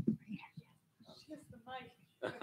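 Faint, indistinct voices, partly whispered, with a brief murmur of speech near the end.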